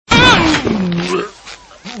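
A cartoon character's drawn-out pained cry, falling in pitch for about a second and then dying away.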